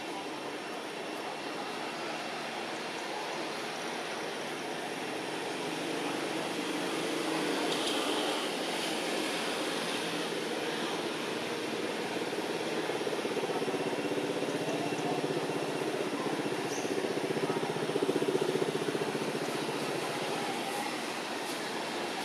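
Steady outdoor background noise: a low hum under a broad hiss, swelling a few seconds in and briefly louder near the end.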